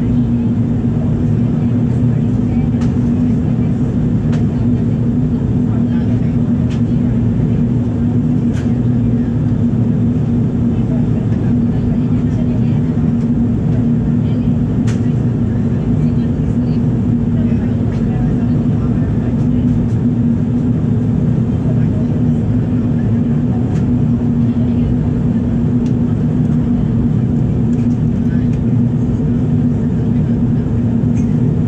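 Steady cabin noise of a Boeing 787-9 in flight: the rumble of its GEnx-1B turbofans and the airflow over the fuselage, with a constant low hum running through it.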